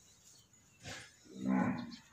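A cow giving one short, low moo about a second and a half in, just after a brief breathy noise.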